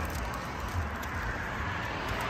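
Steady outdoor background noise: a low rumble with an even hiss and no distinct events.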